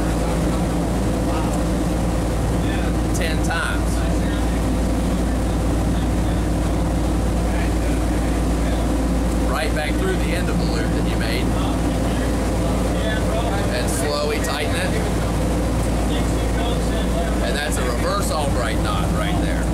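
A fishing boat's engines running steadily underway: a constant low drone with a steady hum, unchanging throughout.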